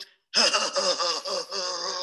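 A woman's wordless vocalizing that begins after a brief pause, pitched and wavering, following a sung jazz-style reading of a poem.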